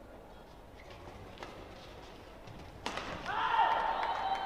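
Badminton rally in an indoor hall: a few faint racket strikes on the shuttle, then about three seconds in spectators start shouting loudly, several voices at once.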